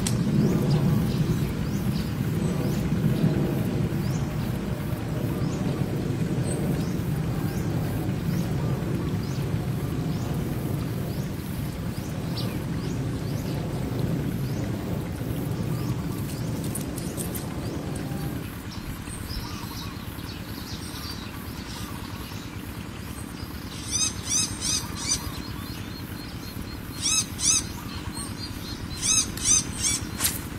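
A bird calling in three short bursts of quick, repeated high chirps in the last six seconds. Under it is a low rumbling noise that drops off a little past halfway.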